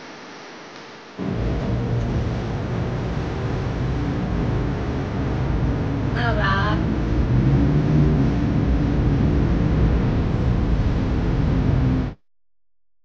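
Loud city street noise from traffic below, starting suddenly about a second in, with a man saying a few words about halfway through; it cuts off abruptly at the end.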